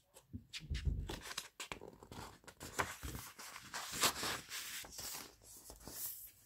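Pages of a paperback picture book being turned and handled close to the microphone: irregular paper rustling and crinkling with small clicks and a few soft handling bumps.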